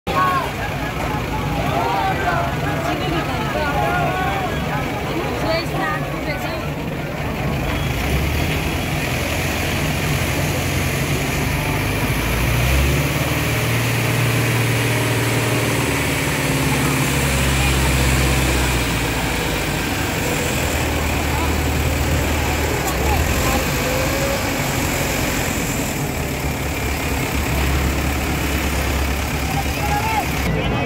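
A crane's engine running steadily, its low hum shifting in pitch a few times as the suspended Ganesh idol is lifted and lowered, with crowd voices and shouts over it in the first few seconds.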